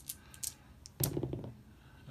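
Light clicks of Strat-O-Matic dice being handled and rolled on a tabletop, then a louder clatter about a second in.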